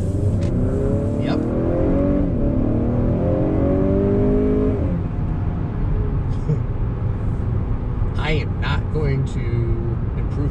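Heard from inside the cabin, a 2019 Honda Accord's turbocharged 2.0-litre four-cylinder, ECU-tuned, accelerating hard with rising pitch, dropping once about two seconds in as it shifts up, then climbing again. About five seconds in the driver lifts off and only a steady low road and engine hum remains.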